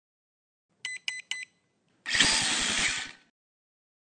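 Logo intro sound effect: three short, high electronic beeps in quick succession, then about a second of loud buzzing whir with a fast, even pulse, like a motor or power tool spinning, cutting off abruptly.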